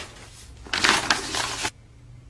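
Sheets of paper rustling and sliding across a tabletop: a rough, noisy burst lasting about a second, cutting off sharply.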